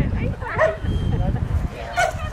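A dog gives a short, high yip about half a second in, over a steady low rumble.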